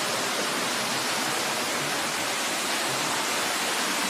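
Water running steadily at a canal lock, an even rushing noise with no change in level.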